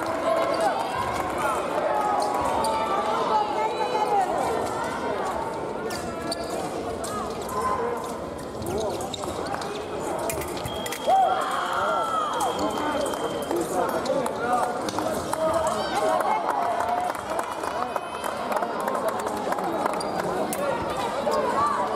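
Fencing-hall ambience: voices echoing around a large hall, over thuds of feet stamping on the piste and sharp clicks. A high steady tone sounds for about three seconds midway.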